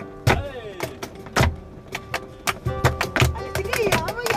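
Flamenco music: a singer's wavering, falling cante line over flamenco guitar, punctuated by sharp hand claps (palmas), sparse at first and coming thicker in the second half.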